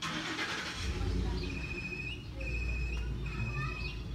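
Wind rumbling on the microphone, starting suddenly, with a high steady whistled note heard three times, each ending in a short upward step.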